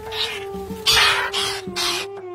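Caged birds give three harsh, rasping calls, each a little under half a second long, over a sustained music tone that slowly drops in pitch.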